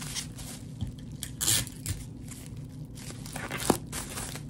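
Plastic bubble wrap rustling and crinkling as hands press and smooth it around an object, in irregular bursts, with a sharper crackle about a second and a half in.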